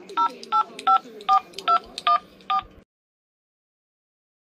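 Telephone keypad touch-tones (DTMF): seven short two-tone beeps in quick, even succession, about two and a half a second, over faint room tone. The sound cuts off a little under three seconds in.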